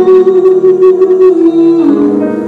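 Live vocal duet with jazz combo backing: a long held note that steps down in pitch twice near the end, over sustained accompaniment, with light quick percussion strokes in the first second or so.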